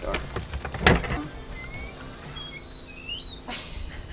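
Wooden Dutch door being unlatched and opened, with one sharp knock about a second in, over background music.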